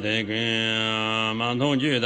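A man chanting Tibetan Buddhist tantra text in a low, near-monotone voice. He holds one syllable for about a second, then moves on through quick syllables at the same pitch.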